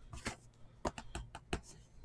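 About ten light, irregular clicks and taps as fingers handle and tap a shrink-wrapped cardboard trading-card box.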